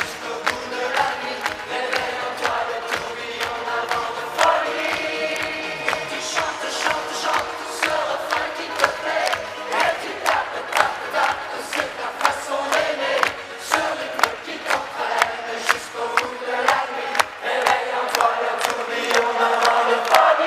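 Live pop music played loud over a concert PA, heard from among the audience: a steady beat with voices singing and crowd noise mixed in.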